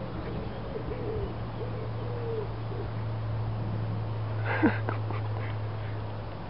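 A bird cooing faintly: short, wavering low notes repeated over the first couple of seconds, over a steady low hum. A person laughs briefly near the end.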